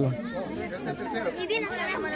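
Chatter of several voices talking over one another, fainter than the single close voice that stops just as it begins.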